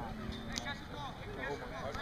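Indistinct chatter of several voices, with one short sharp click about half a second in.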